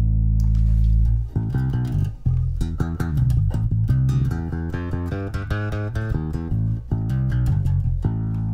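Electric bass guitar played through the Holt2 resonant lowpass filter, the filter partly blended with the dry signal. A long low note rings for about the first second, then a run of plucked notes follows, with a heavy deep low end.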